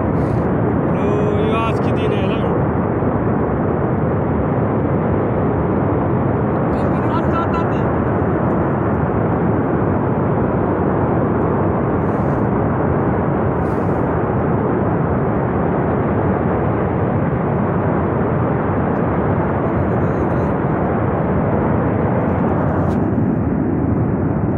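Steady, unbroken roar of a flash flood and debris flow tearing down a mountain gorge. Brief voices cut through about two seconds in and again around seven seconds.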